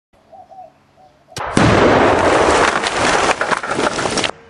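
A click, then a sudden loud, harsh rush of noise lasting nearly three seconds that cuts off abruptly.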